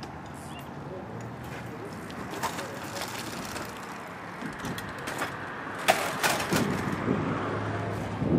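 A wheelchair crashes over at the foot of a skate ramp onto pavement: a quick cluster of sharp metal knocks and clatters about six seconds in, over steady outdoor noise, with voices calling out just after.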